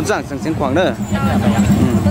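A person speaking with strongly rising and falling pitch during the first second, over crowd chatter, then a low steady hum with a regular pulse under the crowd noise.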